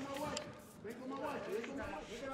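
Indistinct voices of people in a hall, quieter than close-up speech, with a couple of faint knocks.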